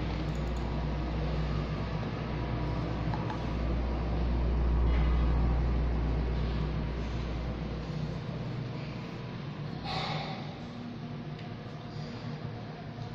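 Low engine-like rumble with a steady hum above it, swelling to its loudest around the middle and dropping away about eight seconds in; a brief clatter about ten seconds in.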